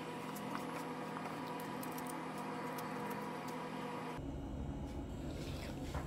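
Steady background hum and hiss of room tone with a few faint constant tones, shifting abruptly to a different background about four seconds in.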